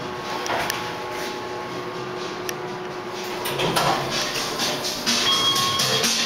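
Montgomery KONE hydraulic elevator at a floor with a faint steady hum, then its doors sliding open about three and a half seconds in, letting louder surrounding noise into the car.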